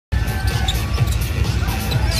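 Basketball bouncing on the court, repeated thumps several times a second, with music playing underneath.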